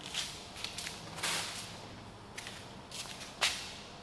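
Quiet rustling and sliding as a car's rear-door trim panel (door card) is picked up and handled, with a short, sharp swish about three and a half seconds in.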